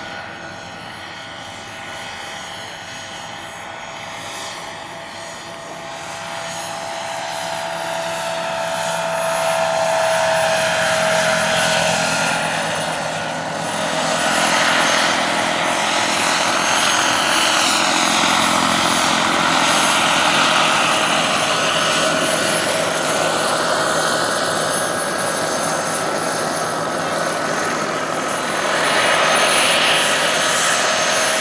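Turbine-powered RC scale model of a Eurocopter EC120 Colibri helicopter flying: a steady turbine whine over the rotor noise. It grows louder over the first ten seconds as the model comes closer, then holds steady as it hovers low.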